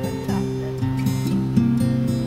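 Music with acoustic guitar, plucked notes following one another every fraction of a second.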